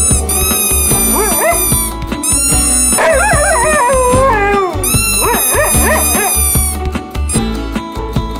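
Huskies howling in wavering calls that bend up and down in pitch, in three bouts of about a second and a half each, over background music.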